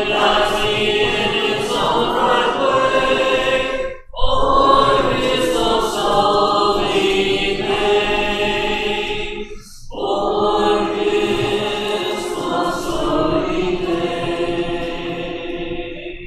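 Church congregation singing a hymn a cappella in parts, with no instruments. The singing breaks briefly twice between lines and ends with the final line near the end.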